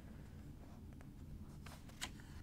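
Fingertips brushing and sliding across a glossy magazine page, a faint papery rustle with a few light ticks of skin on paper near the end.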